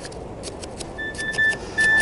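Chopstick jabbing into gritty, granular bonsai soil, working it in around the roots of a freshly repotted tree: a scatter of small crunches and clicks over steady background noise.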